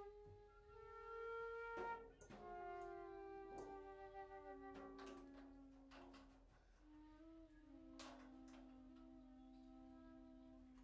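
Two flutes playing slow, quiet improvised lines, holding long notes that step from pitch to pitch and often sound together. A few sparse strikes from the drum kit cut in between them.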